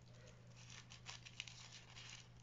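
Faint crinkling of tissue paper, a few short crackles around the middle, as a thin layer is pulled apart from the others and lifted up, over a low steady hum.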